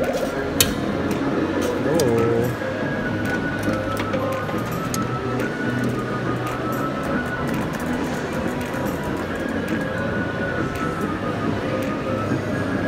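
Arcade ambience: electronic music from the machines plays over the voices of people nearby, with a few short clicks.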